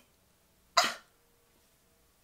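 One short, breathy vocal burst from a woman, like a quick cough or scoff, about three-quarters of a second in, between stretches of near silence.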